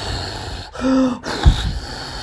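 Handheld heat gun running, blowing a steady rush of hot air, with a short vocal sound about a second in.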